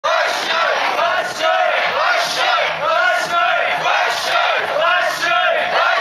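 A group of mikoshi bearers chanting in unison as they carry a portable shrine, a short rhythmic shout repeated about once a second in high voices.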